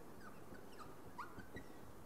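Quiet lecture-room background hiss, with a few faint, brief high squeaks.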